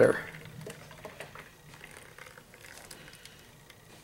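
Melted butter pouring from a saucepan into a plastic pitcher: a faint liquid splashing with small patters that thins out toward the end as the stream turns to drips.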